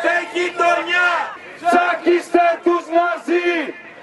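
Protest marchers shouting a rhythmic slogan chant in Greek, short shouted syllables in quick phrases with brief breaks between them.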